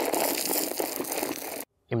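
Crushed-stone frost-protection gravel poured from a plastic bucket into a post hole: a steady rushing rattle of stones that cuts off suddenly about one and a half seconds in.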